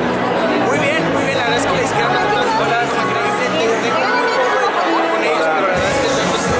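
A man talking in an interview over a busy crowd's chatter, with music playing in the background.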